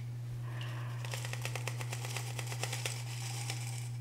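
Perlite granules being dropped by hand into a glass jar, many small light irregular clicks and crunches, over a steady low hum.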